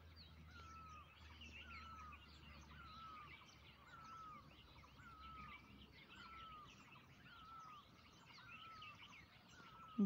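Faint background birdsong: one bird repeats a short, curved chirp a little faster than once a second, over many fainter, higher twitters from other birds. A low hum runs under it and fades out about six seconds in.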